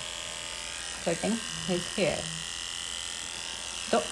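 A corded electric pet hair clipper with a 6 mm guide comb running steadily at medium speed as it is passed through a Shih Tzu's coat. It gives an even, high-pitched motor buzz.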